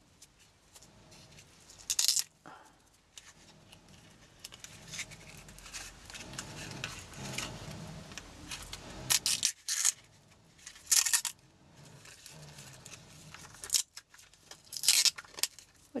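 Plastic cling wrap crinkling and tearing in short bursts, several times, as it is peeled off a small moulded paper-and-gauze form.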